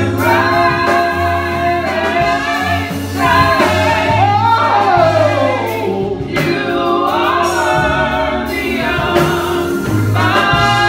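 Women's voices singing gospel together through microphones, over a steady low bass line. Near the middle one voice sweeps down in a long falling run.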